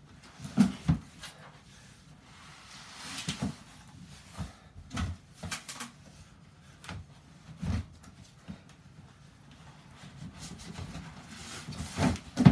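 A large cardboard shipping carton being handled: knocks and thumps as it is tipped over and set down on the floor, with the rustle and scrape of cardboard as its flaps are opened and the inner product box is slid out.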